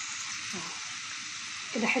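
Spices and tomato paste frying in hot oil in a pan, a steady sizzle, as a spatula stirs through the mixture.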